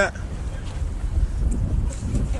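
Wind buffeting a phone's microphone, a low uneven rumble.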